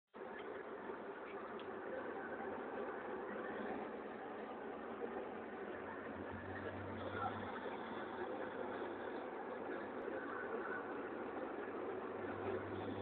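Steady engine and road noise heard inside the cabin of a BMW car driving at highway speed, with a low hum that swells briefly a little past halfway.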